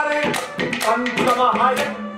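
Man singing a Haryanvi ragni live through a microphone and PA, his voice bending in pitch between phrases. Sharp percussive taps cut in near the start and again near the end.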